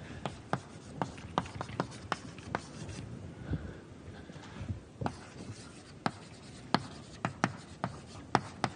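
Chalk writing on a blackboard: a run of sharp, irregular taps and short scrapes as words are written, with a brief lull midway.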